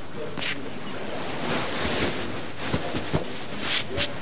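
Cloth of a suit jacket rustling as it is slipped on over a shirt and settled on the shoulders, with a few short swishes of fabric over a steady hiss.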